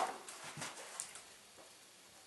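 Paper booklet being handled and its pages turned: a sharp snap of paper at the start, then a couple of soft rustles and a light tick about a second in.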